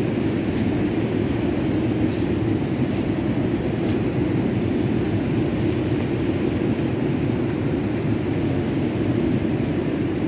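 Steady low roar of ocean surf breaking along a rocky shore.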